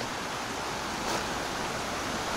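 Steady rushing of a shallow mountain river flowing over stones.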